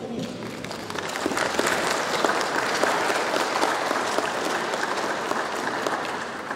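An audience applauding: many hands clapping together, swelling over about the first second and then holding steady.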